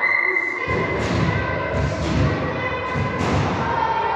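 A run of heavy, low thuds starting about two-thirds of a second in: a high jumper's run-up footfalls and landing on the foam mat. Music plays underneath.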